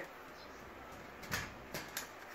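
Two short clicks or knocks from handling the tripod's plastic speaker mount as its locking screw is loosened by hand. The first comes about a second and a third in, the second just before the end, over faint room tone.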